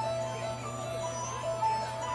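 A slow, simple melody of clean single electronic notes, each held briefly, like a music box or chime, over a steady amplifier hum.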